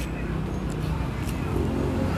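A motor engine's low steady hum, growing louder near the end.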